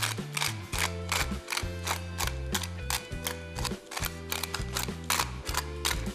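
Hand pepper mill being twisted, grinding with a quick run of ratcheting clicks, over background music with a stepping bass.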